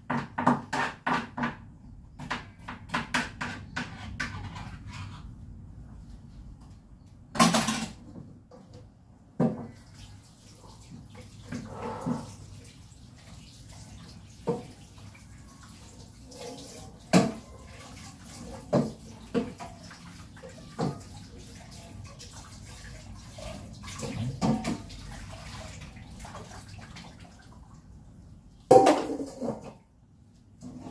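Dishes being washed by hand in a steel kitchen sink: a rapid run of clinks and clatters in the first few seconds, then water running with single knocks of plates and utensils against the sink every few seconds, and a louder clatter near the end.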